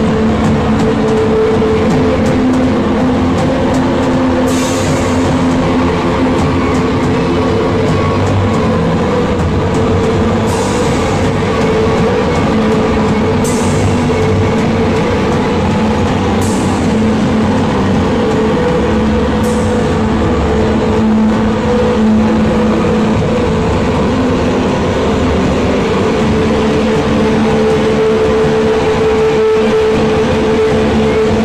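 A noise-rock/drone band playing live at high volume: a dense, distorted wall of guitar and bass holds sustained low notes. Cymbal crashes come roughly every three seconds through the first two-thirds, then stop while the drone carries on.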